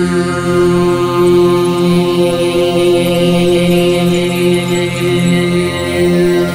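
Overtone singing: a steady low sung drone note with its overtones ringing out above it, in a meditative chant.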